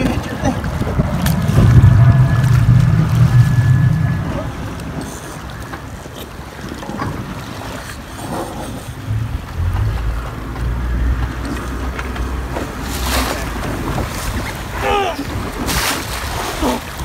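Open-sea water sloshing and wind buffeting the microphone, under the low hum of an idling boat engine that swells twice.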